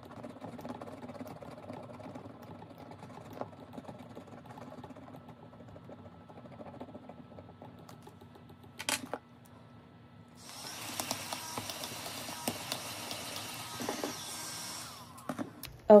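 Scratch-off coating being scratched off a savings-challenge card by hand. It is a soft, fine scratching at first, with a sharp click near nine seconds. About ten seconds in there is a louder, faster stretch of scratching that stops about a second before the end.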